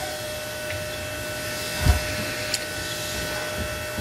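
A steady background hum with a thin, constant whine through it, like a small motor or appliance running, and a single low thump a little before halfway.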